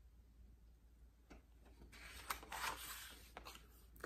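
A picture book's paper page being turned by hand, with a short soft rustle and a few light clicks starting about two seconds in.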